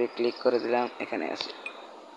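A person's voice speaking in short, quick syllables. No other sound stands out.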